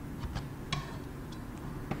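Kitchen knife slicing a thin egg-yolk sheet into strips, the blade clicking lightly against a wooden cutting board about five times, unevenly spaced.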